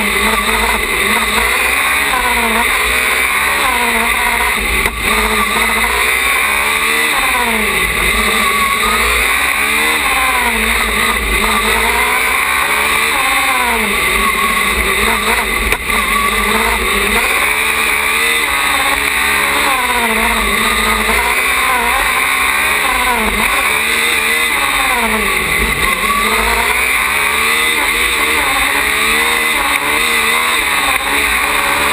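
Single-seater race car's engine heard from on board, its pitch climbing under acceleration and dropping back again and again as the car accelerates and slows through the corners.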